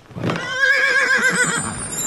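A whinny-like warbling cry, its pitch wavering rapidly, lasting about a second from just after the start, then trailing off into a soft hiss.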